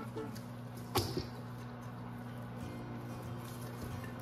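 Quiet background music with a steady low tone, and a single sharp clink about a second in as a glass bowl of diced beef is tipped against a stainless steel mixing bowl.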